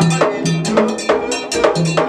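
Haitian Vodou ceremonial music: a metal bell struck in a quick, steady beat with drums, and voices singing a sacred song.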